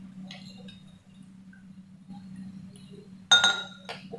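Glassware clinking once, sharply, about three seconds in, with a short ring. Earlier there are a few faint clicks over a low steady hum.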